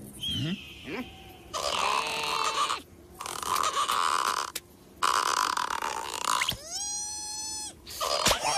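Cartoon soundtrack of wordless character vocal noises and comic sound effects in several short bursts. Near the end a pitched sound slides up and holds for about a second before stopping.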